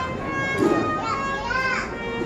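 A procession band (agrupación musical) playing held brass notes, under the chatter and calls of a crowd that includes children's voices.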